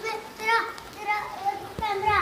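Children's high-pitched voices calling out in several short, wordless calls while playing.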